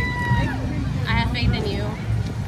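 Indistinct talking from people close by: one drawn-out held vowel at the start, then a short run of speech about a second in, over a steady low background rumble of an outdoor crowd.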